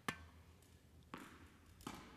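Tennis racket striking a ball in a sharp pop just after the start, the ball bouncing on the court about a second later, and a second racket hit near the end as the backhand is played.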